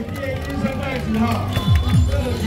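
Electronic dance music played loud from a parade sound truck's speakers, with a heavy pulsing bass and sweeping bass glides near the end; voices are heard over it.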